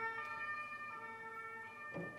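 A faint two-tone emergency-vehicle siren, its steady pitched wail stepping back and forth between two pitches every half second or so.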